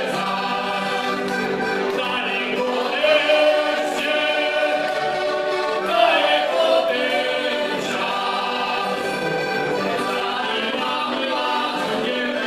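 Three heligonkas (Slovak diatonic button accordions) playing a folk song together while the players sing along into microphones.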